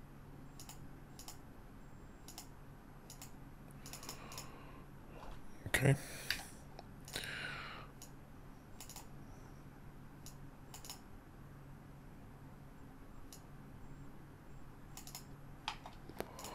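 Computer keyboard keys and mouse buttons clicking now and then, faint over a low steady hum. A louder short noise comes about six seconds in, followed by a brief falling rustle.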